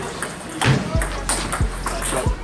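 A table tennis rally: the celluloid ball clicks sharply off bats and table several times in quick succession.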